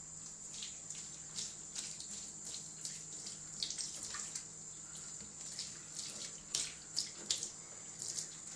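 Tap water running into a shallow bathtub, with frequent short splashes as a cat is washed, several sharper ones in the second half.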